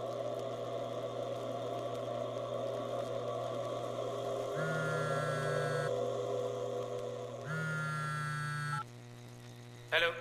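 A mobile phone ringing twice, two identical electronic rings of a little over a second each, the ringing stopping just before the call is answered, over a steady low drone of background score.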